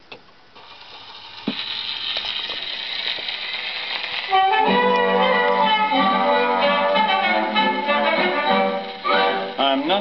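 A 78 rpm shellac record on a gramophone: surface hiss as the needle runs in, with a click a second or so later. The orchestral introduction, led by brass, comes in loudly about four seconds in. A man's singing voice starts near the end.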